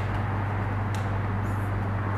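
Steady low electrical hum and room noise, with one faint tick about a second in.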